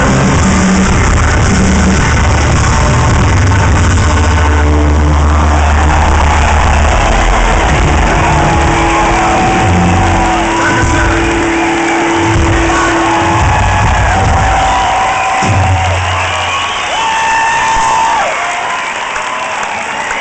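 Live rock band playing the closing bars of a song in a large hall, heavy sustained bass at first, then scattered held notes. A crowd is cheering over it, and the music thins out near the end.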